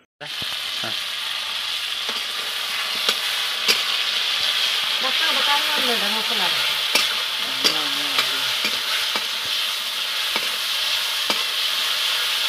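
Food sizzling in hot oil in a steel wok, stirred with a metal spatula that clicks and scrapes against the pan now and then. The sizzle starts suddenly and then stays steady.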